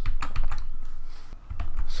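Computer keyboard keystrokes: a quick run of sharp clicks, a cluster in the first half-second and another near the end.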